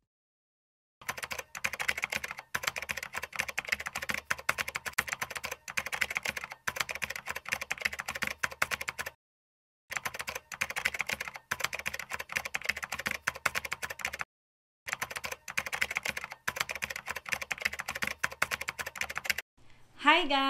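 Rapid typing on a computer keyboard, a dense run of key clicks in three long stretches with brief pauses between them.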